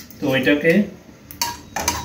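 Spatula clicking and scraping against a dry kadai as whole cloves and black peppercorns are stirred for dry-roasting, a few short knocks in the second half.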